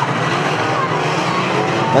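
Several 2-litre banger racing cars' engines running together in a steady, continuous din.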